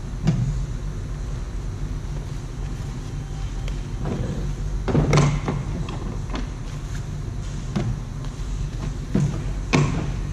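Steady low hum of a garage bay's ventilation, with a handful of short knocks and clatters as hatch parts and tools are handled on a plastic kayak hull. The loudest knock comes about halfway, and a few more come near the end.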